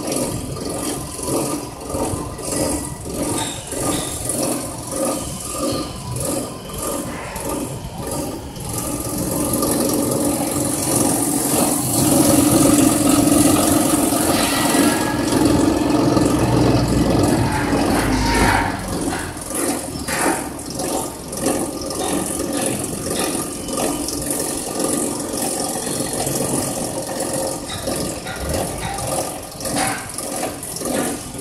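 Pulian JWS 260 stainless-steel processing machine running with a rattling mechanical sound while dried plant material is fed into its hopper. The sound pulses regularly at first, grows louder and denser about ten seconds in as material is poured in, and eases back after about nineteen seconds.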